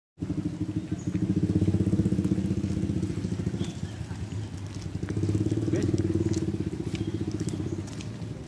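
A small engine running close by with a rapid steady pulse, swelling louder twice and easing off near the end.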